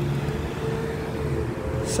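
City street traffic: a car passing close by with a steady engine hum, and a brief hiss near the end.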